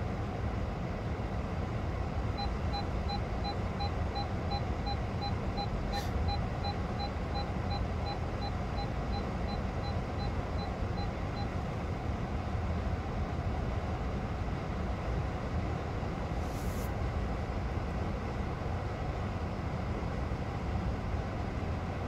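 Steady low rumble of an idling car, heard inside its cabin. A rapid series of short electronic beeps, about three a second, starts a couple of seconds in and stops about halfway through.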